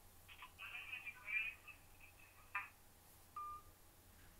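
A voice comes faintly through a mobile phone's earpiece, thin and tinny, for a couple of seconds, followed by a single short electronic beep about three and a half seconds in.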